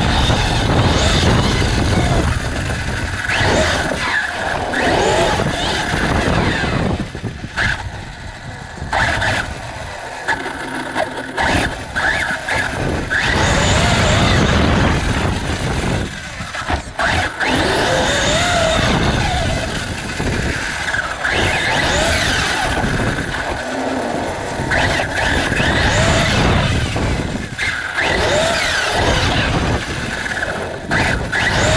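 Onboard sound of an Arrma Fireteam 6S RC car driving, its 2050Kv brushless motor and drivetrain whining up and down in pitch as the throttle is worked, over a steady rumble and rattle from the tyres and chassis. The whine drops away briefly a few times, about a third of the way in and again just past the middle.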